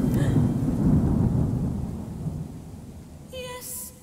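Theatrical thunder sound effect: a low rumble that fades away over about two and a half seconds. A quiet held musical note comes in near the end.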